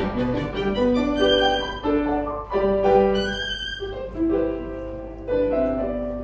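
Violin and grand piano playing classical music: the violin carries a melody of held notes, stepping up and down, over piano accompaniment.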